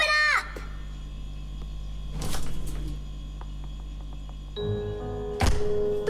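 A cartoon sound effect of a refrigerator door shutting with a heavy thunk near the end, over a low steady hum. A held musical note comes in just before the thunk.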